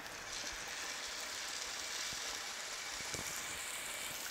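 Beef burger patty sizzling in hot oil in a frying pan, a steady hiss that sets in just after the start.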